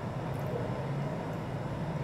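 A steady low hum of background noise, unchanging.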